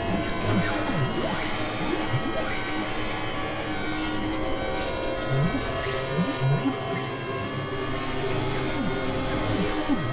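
Experimental synthesizer drone music from a Novation Supernova II and a Korg microKORG XL. Many sustained tones are layered from low to high, with short low gliding blips dropping in and out, several bunched together in the middle.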